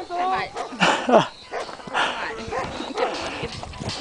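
Dogs barking a few times in short bursts, the clearest about one and two seconds in.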